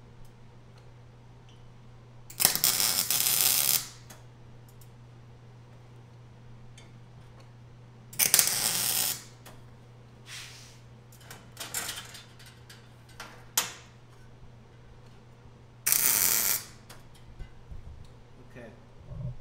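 Wire-feed welder laying three short tack welds on steel, each a crackling burst of about a second. A few light clicks and metal taps come between the welds over a steady low hum.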